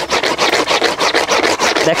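Fast, scratchy scrubbing of several strokes a second as a small hard plastic object is rubbed back and forth over a foam cushion's woven upholstery-fabric cover. It is a friction test of the cover fabric, which only gets hot and shows no damage.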